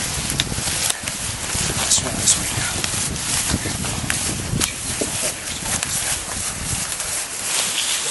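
Several people's footsteps shuffling through dry leaf litter while they carry a heavy timber beam, with wind buffeting the microphone and a few short sharp clicks scattered through.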